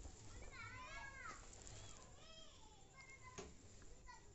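A young child's voice, faint and distant, calling out in two short high-pitched phrases over quiet room tone, with a faint click near the end.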